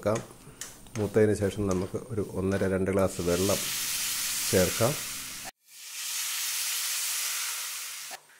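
Water poured into a hot metal pan of frying onion-and-spice masala sets off a loud, steady sizzle from about three seconds in. The sizzle cuts out suddenly for a moment and then resumes. A voice-like sound comes before the sizzle, in the first three seconds.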